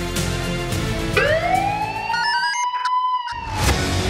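TV programme theme music with a siren-like tone that rises steeply about a second in and holds. The bass drops out under it for a moment, then the full music comes back in just before the end.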